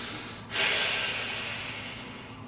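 A man's audible breath out, probably a short laugh through the nose: a softer breath, then a sharper one about half a second in that fades away over the next second and a half.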